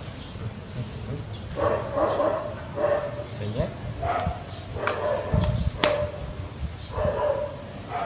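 Baby macaque giving a series of short, whimpering calls, each a steady pitched note, about a second apart. Near the middle there is a sharp click with a low thump.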